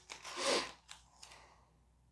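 Masking tape being handled and laid down: one short crinkling rustle about half a second in, then a few faint light clicks.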